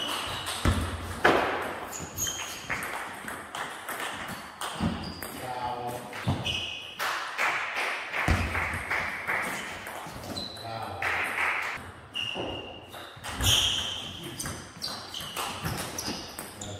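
Table tennis rally: the plastic ball clicking sharply off the bats and the table in quick exchanges, with short high squeaks and voices in the hall.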